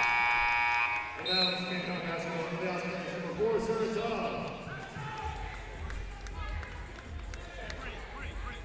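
Arena background picked up by the broadcast microphone during a stoppage after the ball goes out of bounds: voices and crowd murmur, opening with a steady tone that lasts about a second.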